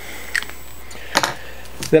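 Light handling noises over a faint steady hiss: a few short crinkles and clicks as a sheet of aluminium foil is picked up and moved on a wooden tabletop, the sharpest about a second in.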